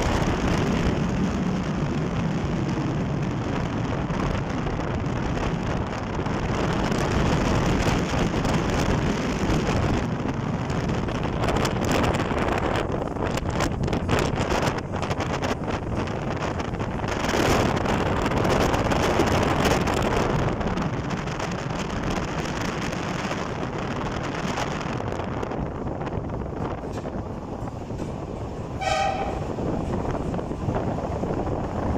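A vehicle driving on a mountain road: a steady rush of engine, tyre and wind noise, rougher and more broken in the middle where the road turns to gravel. About a second before the end a short horn toot sounds as the vehicle nears a tunnel.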